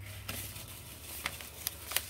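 A yellow padded mailer envelope being handled: soft rustling with several light clicks, the sharpest just before the end.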